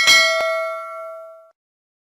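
A bell ding sound effect, as for a notification bell being switched on: one struck ring with several tones that fades out over about a second and a half. There is a short click partway through.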